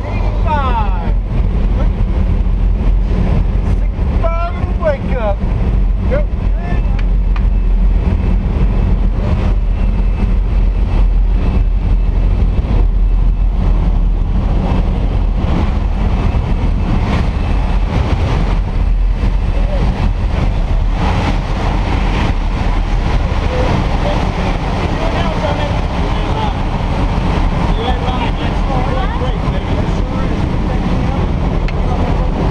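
Skydiving jump plane's engine and propeller drone, loud and steady, heard from inside the cabin with wind rushing in through the open jump door.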